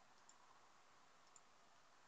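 Near silence with two faint computer mouse clicks, one about a third of a second in and one a little past the middle.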